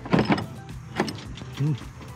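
A red corded hammer drill being handled as a bit is fitted into its chuck: a brief rattling burst, then a single sharp click about a second in.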